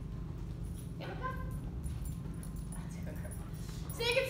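A German Shepherd puppy gives a short high whimper about a second in, over a steady low hum.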